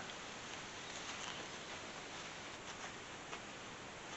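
Quiet outdoor background hiss with a few faint light ticks and rustles, about a second in and again near the end.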